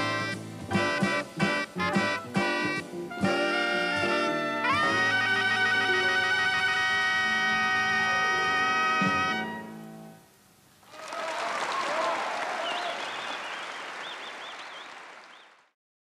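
Jazz band horns (trumpets, trombone and saxophones) with rhythm section playing a run of short accented ensemble hits, then a rising figure into a long held final chord that stops about ten seconds in. After a brief pause, audience applause comes in, fades, and cuts off just before the end.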